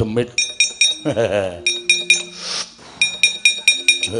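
Keprak, the metal plates hung on the wayang kulit puppet box, struck rapidly by the dalang to accompany puppet movement: quick ringing metallic clinks, about five a second, in two runs with a break in the middle.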